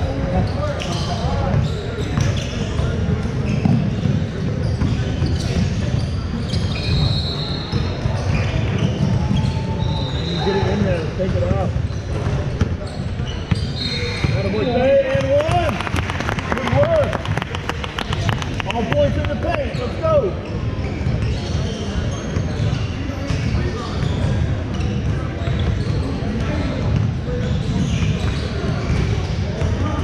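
Echoing gym ambience at a basketball game: a basketball bouncing on the hardwood floor, short high-pitched sneaker squeaks, and indistinct voices of players and spectators.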